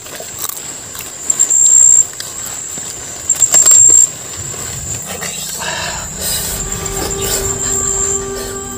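A night insect calling close by: a steady high-pitched drone with two loud, shrill bursts, each opening with a few short pulses, about a second and a half and three and a half seconds in.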